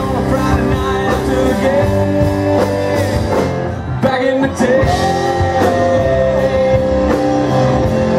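Live country-rock band playing electric guitars, bass and drums, with long held notes over a steady beat. The sound drops briefly about halfway through, then the band comes back in.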